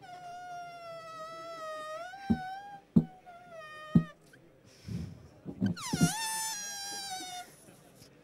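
Helium balloon squealing as gas is let out through its stretched neck: three long, steady high-pitched squeals with short clicks between them. The last one starts higher and slides down in pitch.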